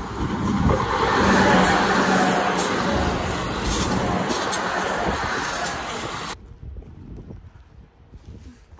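Electric passenger train passing close by at a level crossing: a loud, steady rushing rumble of the train on the rails, which cuts off suddenly about six seconds in.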